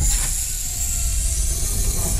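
Sound effect accompanying an animated countdown title card: a dense mechanical whir over a deep rumble, starting abruptly.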